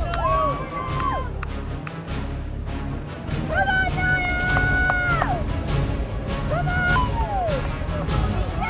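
Performance music: a song with a singer holding long notes that slide down at their ends, over drums and a full band.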